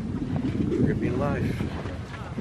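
Wind buffeting the camera microphone: an uneven low rumble throughout, with a brief spoken word about a second in.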